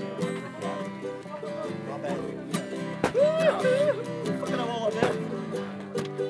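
Acoustic guitar and fiddle playing a country-style tune together, with sliding melody lines from about three seconds in.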